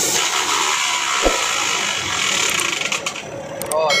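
A steady rushing hiss inside a truck cab starts suddenly and fades after about three seconds, with a single click about a second in.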